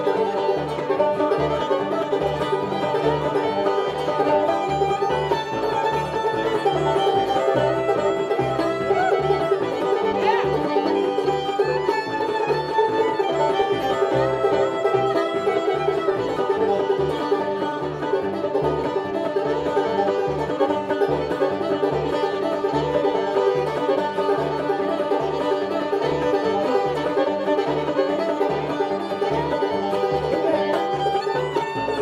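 Old-time string band playing an instrumental passage: fiddle and banjo carrying the tune over acoustic guitar and a steady upright-bass beat.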